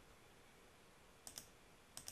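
Near silence with a few faint computer mouse clicks: a quick pair about a second and a half in, then one more near the end.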